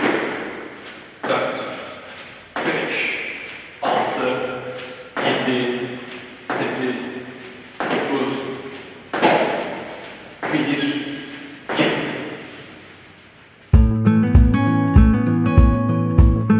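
A man counting squat repetitions aloud, one short number about every 1.3 s, nine counts in all, each echoing in a large hall. Near the end the counting stops and acoustic guitar music starts abruptly.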